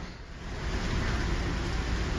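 Steady outdoor street noise: a low rumble under an even hiss, dipping briefly just after the start.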